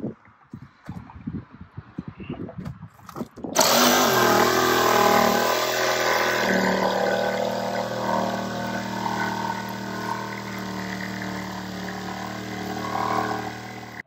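Cordless jigsaw cutting a window opening through a camper's thin aluminium skin. After a few seconds of faint handling sounds, the saw starts suddenly about three and a half seconds in and runs steadily to the end, its pitch wavering slightly as it cuts.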